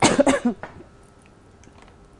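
A person's cough: one short, noisy burst of about half a second with a few quick pulses, right at the start.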